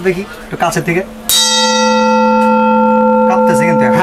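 A Gujarati kansa (bell-metal) bowl is struck once with a metal spoon about a second in, then rings on in a long, steady, many-toned note. A ring that lasts this long is what the seller offers as the mark of genuine kansa.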